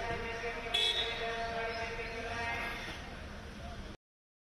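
People's voices over a steady buzzing tone. A brief louder burst comes about a second in, and the sound cuts off abruptly near the end.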